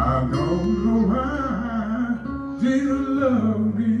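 A man singing a slow melody with vibrato into a microphone over sustained instrumental accompaniment.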